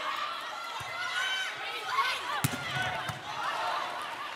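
Volleyball rally in a packed arena: the crowd shouts and cheers steadily, over a few sharp smacks of the ball on players' hands and arms. The loudest hit comes about two and a half seconds in.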